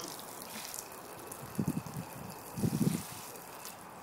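A thin stream of water from a hose splashing steadily onto a flat panel and trickling off into a drain trough. Two short low rumbles come about one and a half and two and a half seconds in.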